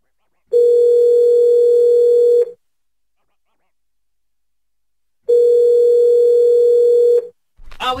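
Telephone ringback tone: the line ringing on an outgoing call that has not yet been answered. It sounds twice as a steady tone about two seconds long, with about three seconds of silence between, and a voice begins at the very end.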